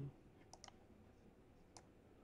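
A few faint clicks from a laptop's keys or pad while text is selected in an editor: two close together about half a second in, one more near the end, over near-silent room tone.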